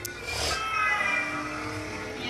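A small child's drawn-out, high-pitched vocal sound, held for about a second.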